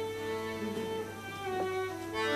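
Violin playing softly in slow, held notes: one long note, then a step down to a lower note about one and a half seconds in.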